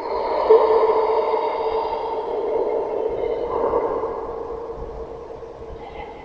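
A sustained droning sound effect of steady tones laid over the animation. It swells in quickly and peaks about half a second in, then slowly fades.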